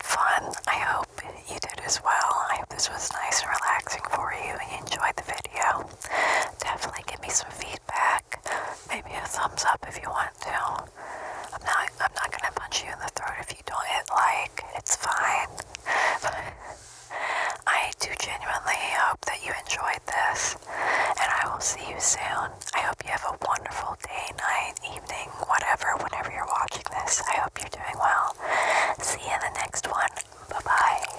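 A woman whispering unintelligibly close to the microphone: a steady stream of soft, breathy syllables with no voiced words, broken by one brief pause about seventeen seconds in.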